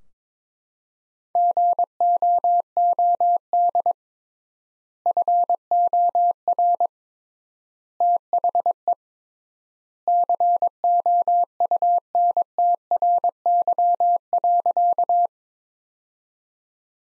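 Morse code sent as a single steady audio tone at 22 words per minute, spelling out 'GOOD FOR THE COUNTRY': four groups of dits and dahs, one per word, with long gaps between them from the extra word spacing. The longest group comes last, for 'COUNTRY'.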